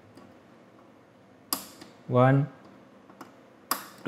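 Small DIP switches on a circuit board flicked on with a thin stick: a sharp click about one and a half seconds in and another near the end, with a fainter tick between.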